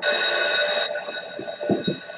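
An electric bell ringing: a ring of several steady high tones that starts suddenly, loud for about the first second and then carrying on more quietly.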